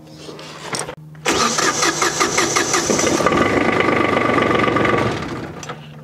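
Small diesel tractor engine cranked by its electric starter about a second in. It catches quickly and runs, the sound easing off near the end. The starter is fed by a lithium battery, and the quick start shows the battery has plenty of cranking power.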